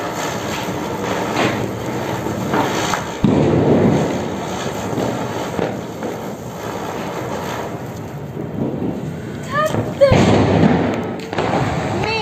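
Diwali ground spinner firework (chakri) hissing as it spins and throws sparks, with two loud firecracker bangs, one about three seconds in and one near the end.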